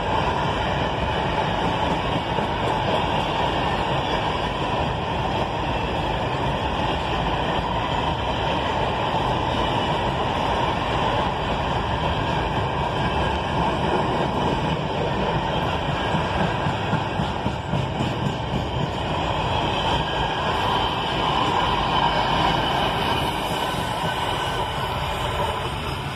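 A freight train's hopper wagons rolling past close by: a steady, unbroken noise of steel wheels running on the rails.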